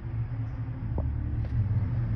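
Car's engine and road noise, a steady low rumble heard from inside the cabin, with one light click about a second in.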